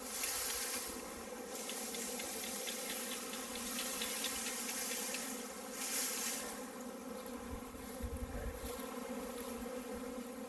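A swarm of honeybees in flight, filling the air with a dense, steady buzzing hum. Brief bursts of hiss rise over it near the start and again about six seconds in.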